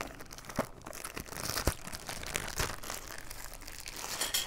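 Thin clear plastic bag crinkling and rustling as it is untied and opened by hand, with scattered sharp crackles; the sharpest comes nearly two seconds in.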